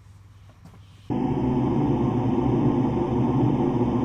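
After about a second of near-quiet with a few faint clicks, a loud, low, steady ominous drone starts abruptly and holds: a horror-style sound effect edited onto the clip.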